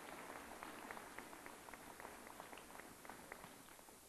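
Faint audience applause: many scattered hand claps that thin out toward the end.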